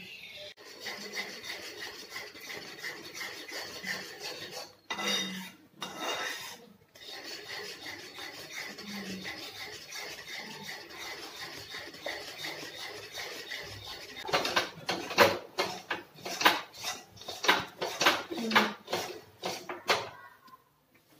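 Metal spoon scraping round a steel kadai while stirring thick semolina halwa, as the halwa thickens in the pan. The scraping is steady at first, then turns into louder, quicker strokes, about two a second, near the end.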